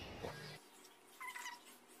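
A faint, short, high-pitched call a little after a second in, over a low hum that cuts off abruptly about half a second in.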